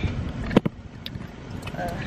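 Parked car idling with a steady low rumble in the cabin; two quick sharp clicks come about half a second in.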